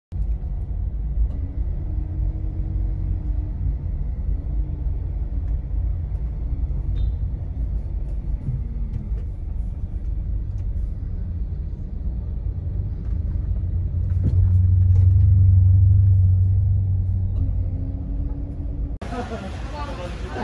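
Low rumble of a car in slow traffic heard from inside the cabin, growing louder for a few seconds past the middle. About a second before the end it cuts to an open-air ambience with voices.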